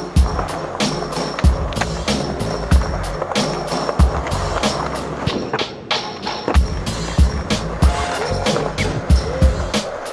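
Skateboard wheels rolling on concrete, with the board flipped in a trick about halfway through, under background music with a steady beat.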